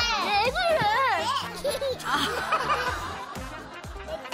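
Toddlers vocalizing and laughing, with a wavering, drawn-out voice in the first second, over light background music.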